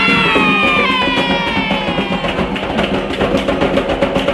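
Drums playing a fast, steady beat, with a singing voice holding a note that slowly falls in pitch over the first two seconds: the drumming and singing of a ritual chant at an Umbanda/Quimbanda gira.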